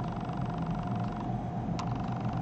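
Steady low background hum with a faint steady tone, and a single short click near the end.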